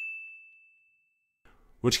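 A high, bell-like ding ringing out and fading away over about a second. A man starts speaking near the end.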